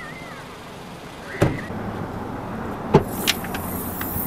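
Hyundai hatchback's doors being shut: a heavy thump about a second and a half in and another near three seconds, then two lighter knocks, over a low steady hum.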